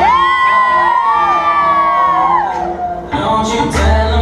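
Hip-hop song played over speakers. The bass beat drops out and long, gliding sung notes carry alone for about three seconds before the beat comes back in.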